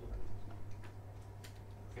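Whiteboard marker writing on a whiteboard: a few faint short clicks and taps of the tip against the board over a steady low room hum.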